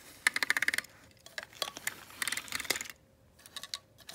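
Plastic Trackmaster toy trains being picked up and handled by hand, giving a quick run of light clicks and rattles, then a few scattered clicks.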